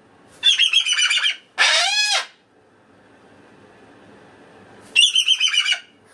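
Moluccan cockatoo calling loudly: a harsh, rapidly pulsing screech, then a pitched call that rises and falls, and after a pause of about two and a half seconds another harsh screech.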